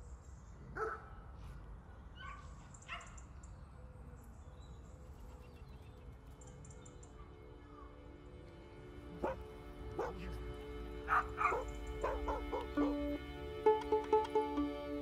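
A few short dog barks and yips over a steady low background rumble. About two-thirds of the way in, music fades in with plucked notes over sustained tones and grows louder.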